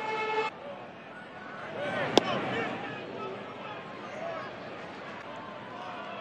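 Ballpark crowd murmur with scattered shouts, opening with a brief steady horn-like tone that cuts off after half a second. About two seconds in, a single sharp pop: a pitch smacking into the catcher's mitt.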